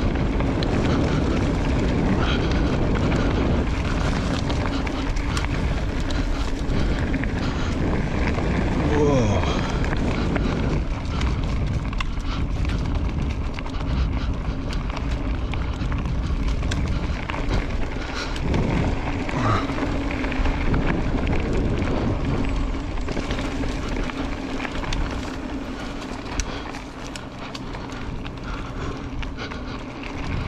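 Specialized Levo electric mountain bike ridden along a dirt singletrack. The mid-drive motor gives a steady hum under constant wind noise on the microphone, with clicks and rattles from the bike over the rough trail.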